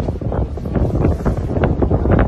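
Wind buffeting the microphone in a loud low rumble, broken by irregular sharp crackles several times a second.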